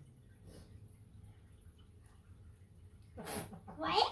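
A short laugh about three seconds in: a breathy burst, then a brief vocal sound rising in pitch.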